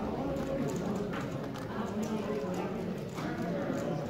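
X-Man Galaxy v2 Megaminx being turned rapidly during a solve: a quick, uneven run of plastic clicks from the faces turning, over voices chatting in the background.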